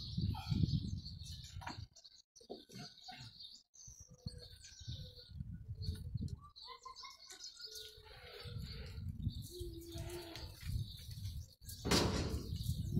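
Small birds chirping on and off, over low rumbling background noise that is loudest near the start and again toward the end.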